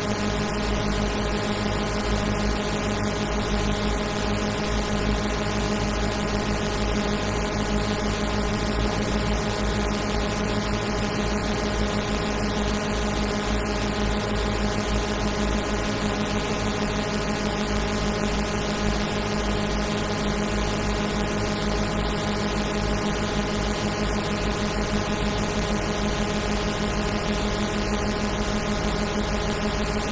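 Madwewe handmade mini-drone synthesizer, six oscillators set in low, mid and high pairs, sounding a dense, steady drone of many stacked held tones over a deep low hum, with its knobs being turned slowly by hand.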